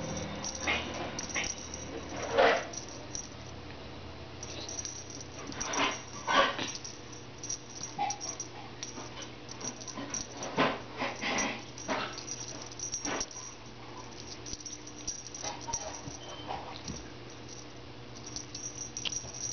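Kittens playing with a feather wand toy on carpet: scattered, irregular scuffling and rustling, with a few louder short sounds about two and a half and six seconds in, over a steady low hum.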